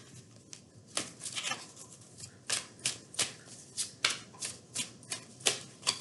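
A tarot deck being overhand-shuffled by hand: a run of irregular sharp card snaps and taps, about two a second, as packets of cards drop from one hand onto the other.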